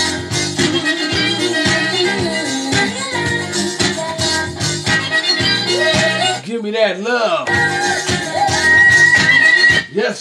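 Oldies dance music playing in a live DJ mix, a full track with a steady beat. About six and a half seconds in, the bass and beat drop out for about a second under a gliding vocal line. The music then comes back, louder near the end.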